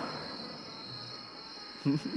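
Steady high-pitched chirring of crickets as night ambience, with the echo of a man's voice dying away at the start and his voice starting again near the end.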